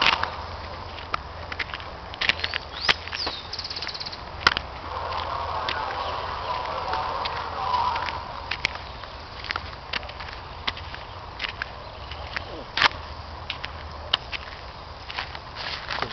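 Footsteps through dry undergrowth: irregular sharp snaps and crackles of twigs and dry leaves underfoot, with a couple of louder snaps about four and a half seconds and thirteen seconds in.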